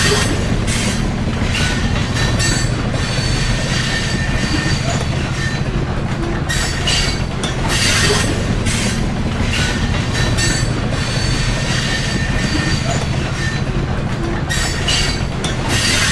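Steel train wheels grinding and squealing against the rails over the steady rumble of a passing train, with screeching surges that come and go every second or two.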